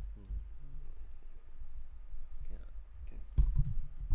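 Scattered sharp clicks and low bumps of handling noise, with a few soft murmured sounds of a voice near the start.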